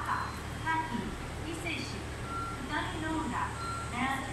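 Station public-address announcement voice, with a few short held electronic tones and a steady low hum underneath.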